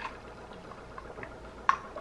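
Faint sipping of an iced drink through a straw from a glass, with a few small ticks and one sharp click near the end.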